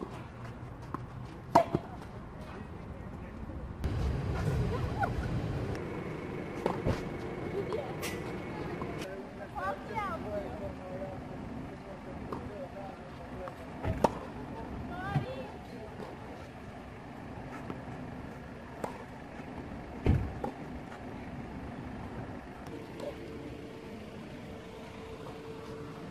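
Tennis balls struck by rackets in a rally: sharp pops several seconds apart, the loudest about a second and a half in and again near the middle and two-thirds through. Voices talk in the background, and a low rumble rises and fades between about four and nine seconds in.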